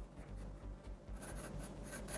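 Graphite pencil sketching on paper: faint, short scratchy strokes, several in a row starting about a second in.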